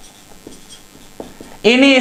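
Marker pen writing on a whiteboard: a few faint short strokes, then a man's voice begins near the end.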